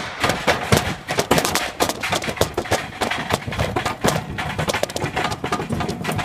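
Metal shopping trolley loaded with potted plants being pushed over paving slabs: its wheels and wire frame rattle and clatter in a dense, uneven run of knocks.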